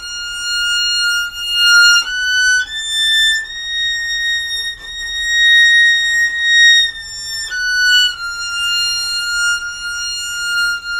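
Solo violin playing a B-flat harmonic minor scale in slow bows with long held notes. It climbs through a short note to a high note held about four seconds, then steps back down to another long held note.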